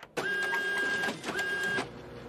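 TV-static glitch sound effect: a hissing burst of noise with a steady high beep that drops out briefly in the middle, cutting off suddenly near the end.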